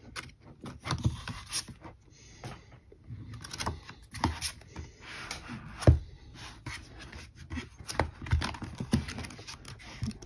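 Pages of a softcover album photobook being flipped and cards handled on a tabletop: a run of short paper rustles, flicks and light taps, the sharpest tap about six seconds in.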